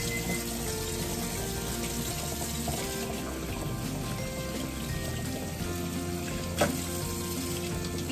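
Kitchen tap running steadily into a stainless steel sink, with music playing in the background. One brief knock late on.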